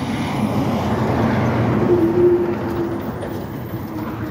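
Freightliner Columbia tractor-trailer dump truck driving past: a steady diesel engine and tyre rumble that is loudest about two seconds in, with a brief steady hum, then fades as it moves away.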